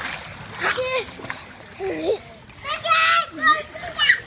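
Pool water splashing as a toddler paddles, with a young child's high voice calling out in short sounds a few times, loudest a little before the end.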